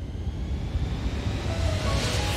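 A rushing noise that swells and rises in pitch, with a faint rising tone running through it: a riser sweep in the background music, building up towards the next beat.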